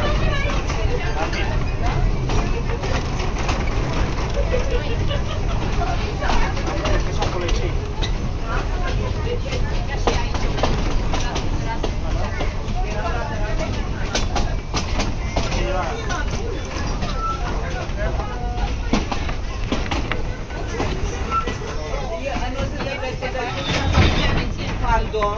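Indistinct passenger chatter over the steady low rumble of a train carriage running along the track.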